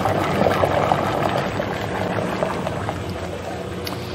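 Vanilla extract poured from a jug into the hopper of a 12-quart batch freezer, the splashing fading out after two or three seconds, over a steady machine hum.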